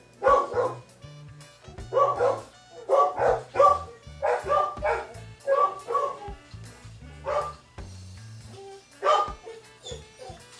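A dog barking repeatedly in short bursts, often two at a time, over background music with a low bass line.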